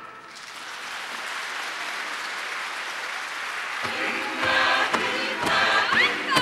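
Audience applauding as a choir song ends. About four seconds in, music with singing starts again over the clapping.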